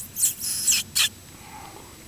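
Four short, high-pitched squeaky hisses made close to the microphone within about a second, some falling in pitch: a person making coaxing mouth sounds to get the groundhog's attention.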